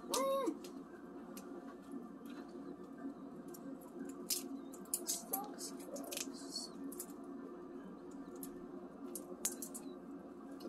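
Raw shrimp being peeled by hand: small scattered crackles and snaps as the shells and legs are pulled off, over a steady low hum.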